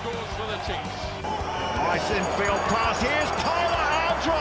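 Background music with a steady thumping beat and a voice over it, singing or rapping rather than talking.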